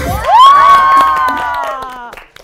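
A small group of young women cheering together, their voices rising into one long held shout, with hand claps, as the dance music cuts off.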